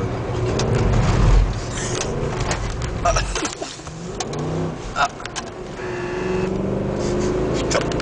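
Mercedes CLS 63 AMG's V8 heard from inside the cabin, accelerating hard with its loudest pull about a second and a half in, easing off around three and a half seconds, then building again toward the end, with tyre and road noise and clicks from the cabin.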